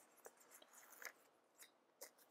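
Faint handling of a paper sticker sheet as a sticker is peeled off it: a few soft, short ticks and rustles spread through the quiet.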